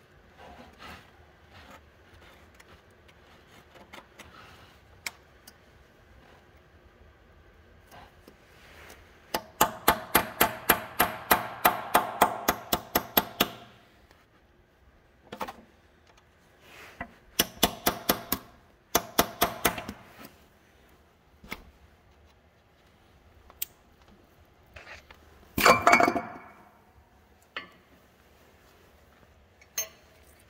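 A steel hand tool working the lip of a cast transmission cover: quick runs of metallic taps, about six a second for several seconds, then shorter runs and scattered single clicks. A louder metal clank comes about 26 seconds in as the cover comes free.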